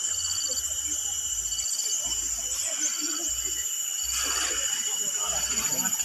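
Faint voices of people over a steady high-pitched whine, with a short high beep repeating about once a second.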